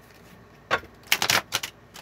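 Tarot cards being handled on the table: one sharp tap a little before a second in, then a quick cluster of four or five crisp clicks and snaps.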